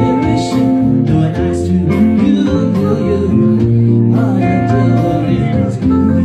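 A live soul-jazz band playing, with guitar prominent and a male voice singing over it.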